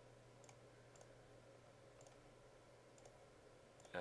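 Faint computer mouse clicks, a handful spaced about a second apart, over a low steady hum and room tone.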